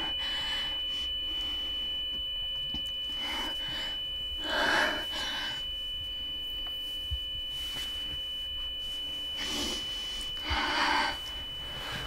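A steady, high-pitched ringing tone holds throughout, with a girl's heavy breaths over it every few seconds, the loudest about halfway through and near the end.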